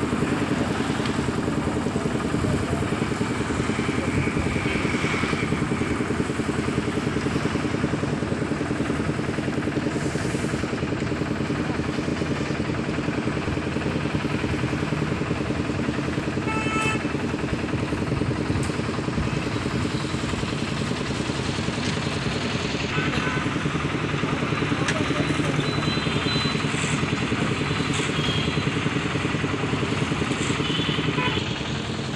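Steady engine running without a break, its level unchanged throughout, with a brief higher tone about seventeen seconds in.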